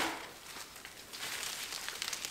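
Faint rustling and crumbling of loose potting soil and roots as a houseplant's root ball is handled and lifted, with a few light crackles.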